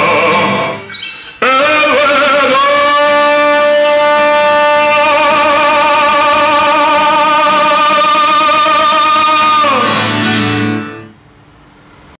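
Male voice singing with an Epiphone acoustic guitar: after a brief break about a second in, he holds one long wavering final note, which drops away near the end as the guitar rings out and the song stops.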